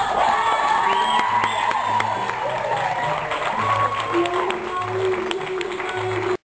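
Audience clapping and cheering with whoops and voices, while music with a low bass line plays on under it.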